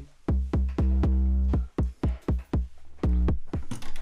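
Noise Reap Foundation eurorack kick drum module sounding an irregular run of synthesized kicks: short hits a few tenths of a second apart, and two held ones that ring for most of a second as a low pitched tone with evenly spaced overtones. The pattern stops shortly before the end.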